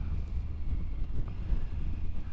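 Wind buffeting the microphone of a moving Triumph Tiger three-cylinder motorcycle, over the steady low drone of its engine and road noise.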